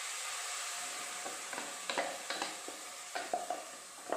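Tomato purée poured into a hot kadai of oil and fried onion masala, sizzling steadily and slowly dying down. From about a second in, a slotted wooden spatula scrapes and knocks against the pan as the mixture is stirred.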